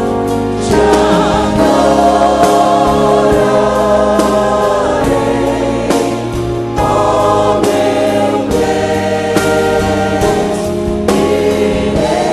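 Church choir singing a gospel song, many voices holding long wavering notes, with short breaks between phrases about a second in, near the middle and shortly before the end.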